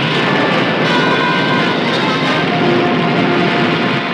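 Loud, steady roaring noise from a film soundtrack, with faint held musical tones coming in about a second in.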